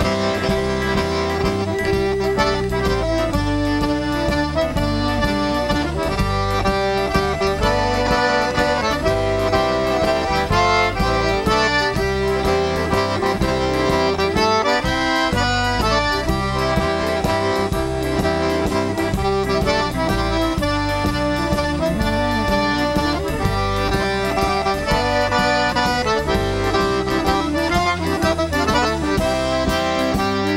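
Cajun band playing the instrumental opening of a waltz at a steady pace, led by a Cajun button accordion, with fiddle, steel guitar and drums.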